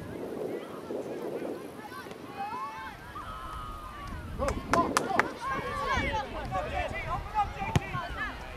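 Players and spectators shouting across a soccer field in drawn-out calls. Several sharp knocks come around the middle, and a single sharp thud near the end as a soccer ball is kicked.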